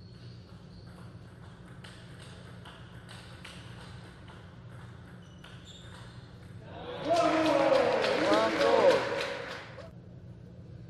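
Table tennis rally: the celluloid-type ball clicks sharply off bats and table about twice a second. After the point, about seven seconds in, there is a loud burst of clapping and shouting voices lasting about two and a half seconds.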